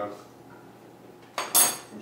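A metal tablespoon set down with a brief, sharp clatter against dishes on the kitchen counter, about one and a half seconds in.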